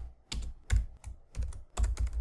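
Typing on a computer keyboard: an uneven run of about eight quick key clicks as a short line of code is entered.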